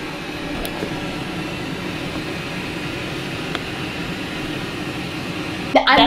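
Steady rushing air noise with a faint low hum, from the hotel room's ventilation running.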